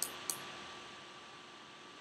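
Two light clicks of a computer mouse button, one at the very start and one about a third of a second later, over a steady faint hiss of room noise.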